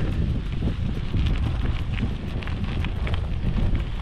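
Wind buffeting the microphone of a chest-mounted camera while riding a gravel bike, over the low rumble of its tyres rolling on a sandy dirt track, with a few faint ticks.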